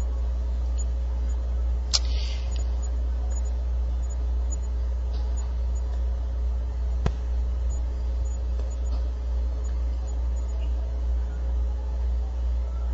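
Steady low hum of microphone and room background noise, with two sharp mouse clicks, one about two seconds in and one about seven seconds in.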